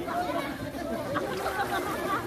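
Many people's voices talking and calling over one another at once: the chatter of a crowd of bathers in a pool.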